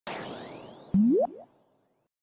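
Logo-intro sound effects: a glittery shimmer of high rising sweeps that fades, then about a second in a short cartoon 'boing' that rises sharply in pitch, followed by a fainter repeat.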